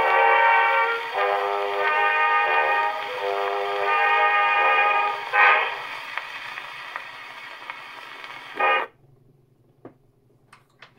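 Acoustic playback of an orchestral waltz from a vertical-cut Pathé disc on a Pathé Tosca gramophone, held chords changing about once a second. About five and a half seconds in there is a loud swell, and then quieter playing. A short burst comes near nine seconds, the sound cuts off suddenly, and a faint click follows.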